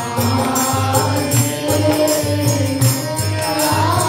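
Harmonium playing held, reedy chords and melody for devotional kirtan, over a steady percussion beat a little over twice a second with jingling strokes on top.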